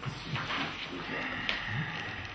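Sheets of paper rustling as they are handled and turned. There is a sharp click about a second and a half in, followed by a brief high squeak.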